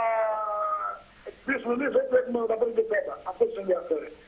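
A man's speech: a long, slightly falling drawn-out vowel for about a second, then ordinary talk after a short pause.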